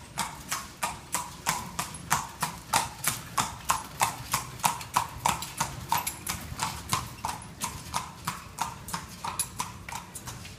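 A horse's hooves clip-clopping on a hard street at a steady walk, about three steps a second, as it pulls a carriage past. The hoofbeats are loudest a couple of seconds in and slowly fade after.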